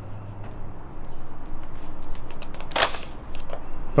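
A corded electric drill's motor hums low and cuts out about a second in, followed by a steady rushing noise and light clicks as it is handled, with a short louder burst near the end. The drill is overheating and smoking at its damaged cord.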